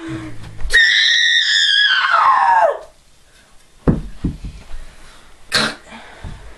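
A young person's high-pitched scream, held about two seconds and sliding down in pitch as it fades. A thump follows about four seconds in, and a short vocal sound comes near the end.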